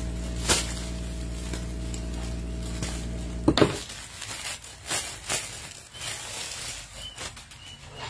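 A steady hum cuts off suddenly with a sharp crackle about three and a half seconds in. Then comes irregular crinkling and rustling of a clear plastic garment bag as a blouse is pulled out of it.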